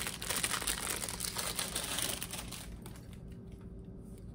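Packaging crinkling and rustling as a small item is unwrapped by hand, dense for the first couple of seconds and then dying away.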